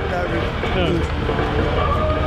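Men talking in Dutch, their voices overlapping, over a steady low rumble.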